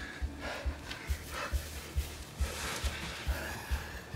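Film score with a steady low pulse, about two to three beats a second, under a person's heavy breathing.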